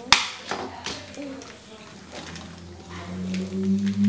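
A sharp plastic click as AAA batteries are pressed into a toy robot's remote controller, followed by a few lighter clicks. A low steady hum rises in from about two seconds in.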